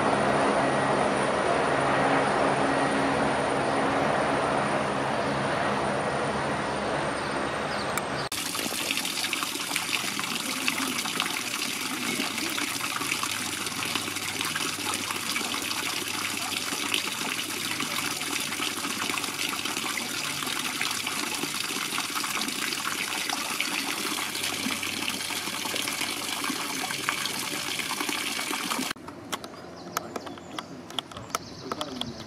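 A loud steady noise with a low hum and a faint high whine that slowly falls in pitch, which cuts off suddenly about eight seconds in. Then water pours from a stone fountain's spouts and splashes into a shallow basin, a steady patter of drops. Shortly before the end it drops suddenly to a much quieter background.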